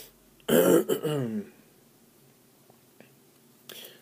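A man coughing to clear his throat, once, about half a second in and lasting about a second.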